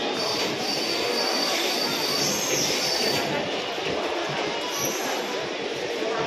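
Passenger train coaches rolling along the rails with a steady rumble, the steel wheels squealing in thin, high tones through the first half and again briefly near the end.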